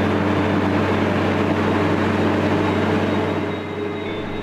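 Large Hitachi hydraulic excavator on a dredging barge running steadily under load as it digs the riverbed: a constant low diesel hum under a broad mechanical din.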